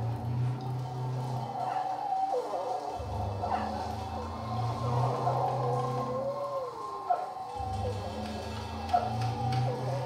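Live experimental noise-rock: a low droning bass swells up and drops away three times, while wavering, gliding higher wails that sound like a cat's yowl run over it. There are a couple of sharp hits near the end.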